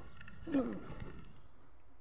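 A person's voice: one short vocal sound that falls in pitch, about half a second in, then faint background noise.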